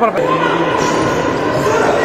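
Futsal play echoing in an indoor sports hall: the ball struck and bouncing on the hard court floor, with players' voices carrying under the hall's reverberation.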